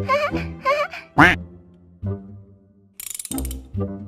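Cartoon sound effects over children's background music: quick squeaky chirps, a sharp rising swoop about a second in, then a short burst of rapid ratcheting clicks about three seconds in as the wheel of characters turns.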